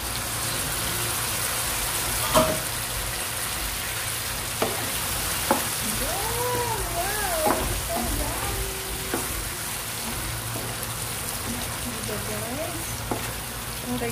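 Chicken pieces and mushrooms in cream sauce sizzling in a hot non-stick frying pan while a wooden spoon stirs them. A handful of sharp knocks of the spoon against the pan come through, the loudest about two seconds in.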